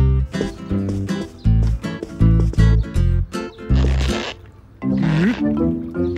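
Cartoon score with heavy, punchy bass notes in an uneven rhythm. Near the end come two short, noisy sounds that rise in pitch.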